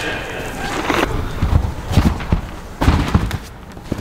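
Dull thuds of a gymnast's run-up and flip on a sprung tumbling track, ending in a heavier thud of landing on a soft mat about three seconds in.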